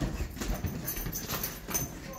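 A Keeshond's claws clicking and scrabbling on a hardwood floor in quick, irregular taps as it tussles with a pillow.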